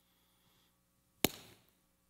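A single sharp knock a little past the middle of an otherwise quiet pause.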